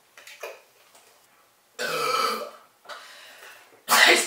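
A person burps once, loudly, for just under a second about two seconds in, right after chugging from a drink can.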